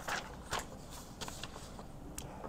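Sheets of paper being shuffled and laid down on a desk: a few faint rustles and soft taps.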